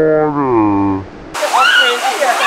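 A woman's long, drawn-out wordless "ohhh" that falls slowly in pitch, a groan of nervous dread at the cold water. Then rushing water pouring over a natural rock waterslide, with high-pitched voices shrieking over it.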